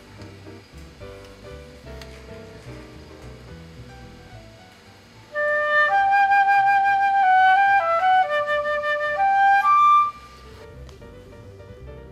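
Flute played in a short phrase of several clear notes, stepping up and down, as the maker test-plays a newly shaped headjoint after adjusting the embouchure hole. Soft background music runs under the first half and returns when the flute stops.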